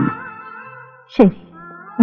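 Film background score of held, wavering tones, with one short cry about a second in that falls steeply in pitch.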